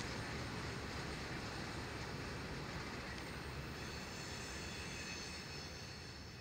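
Norfolk Southern freight train rolling away as a steady rumbling noise that slowly fades, with faint steady high-pitched tones coming up in the second half.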